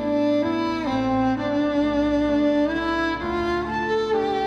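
Bowed violin playing a slow melody in long held notes, sliding smoothly from one note to the next, over a low sustained accompaniment.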